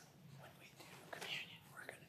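Faint whispered, hushed voices over a low steady room hum.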